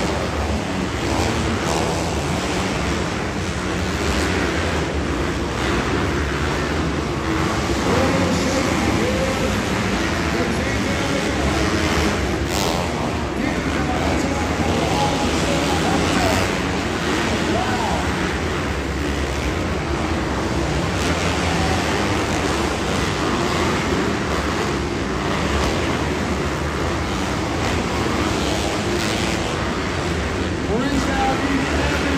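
Dirt bikes racing around an indoor arenacross track, their engines revving up and down through the corners, over a steady din of crowd and voices.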